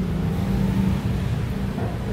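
Steady low hum of a motor vehicle's engine running in street traffic, one even pitch with no revving.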